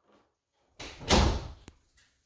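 A door closing firmly: a sudden low thud about a second in, followed by a short latch click.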